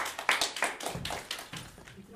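Small audience clapping, the applause thinning out and fading away.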